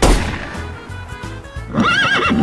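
A sudden loud hit at the very start that fades over about a second, over background music with a steady bass line; near the end a horse whinnies, its pitch rising and falling.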